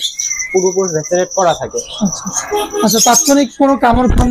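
A person talking, over a high, steady chirping in the background that fades out about halfway through.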